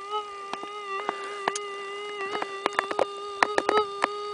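Minelab metal detector's threshold hum: a steady buzzing tone holding one pitch, with a scatter of sharp clicks in the second half.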